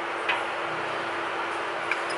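A steel utensil clinking lightly against a drinking glass twice, about a third of a second in and near the end, over a steady low hum.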